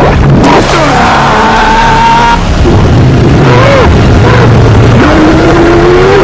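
Film soundtrack: a loud, droning synthesizer score with long gliding tones over a deep rumble, mixed with muffled underwater churning.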